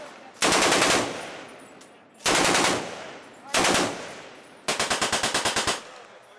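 Browning BAR M1918 automatic rifle firing .30-06 on full auto in four short bursts. The last and longest burst runs about a second with roughly ten rapid shots. Each burst dies away in a decaying echo.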